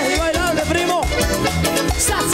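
Cumbia ranchera played live by a band: a keyboard melody with gliding notes over guitar, drums and percussion, with a steady beat.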